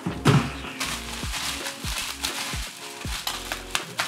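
Plastic bubble wrap crinkling as it is handled and unwrapped, over background music with a steady bass beat. A loud thump comes about a quarter second in.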